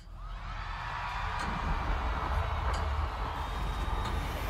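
Live concert music starting from silence and swelling within the first second: a deep, steady bass drone under a dense wash of sound and crowd noise.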